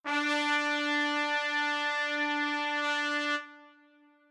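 Scale degree 3 of the B-flat concert scale, concert D, played on a band wind instrument as one long steady note that stops about three and a half seconds in.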